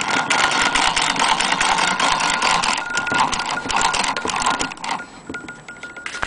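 Antique Victorian Royal Sewing Machine Company 'Shakespeare' sewing machine stitching through denim: a rapid, continuous mechanical clatter of the needle mechanism that stops about five seconds in.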